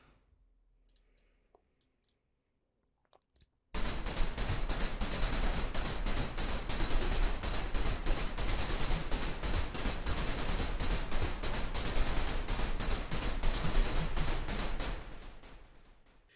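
Synthesized noise percussion, a filtered white-and-pink-noise patch in u-he Zebra 2, playing a fast arpeggiated pattern of bright, hissy hits through a delay. It starts about four seconds in after near silence with a few faint mouse clicks, and fades out near the end.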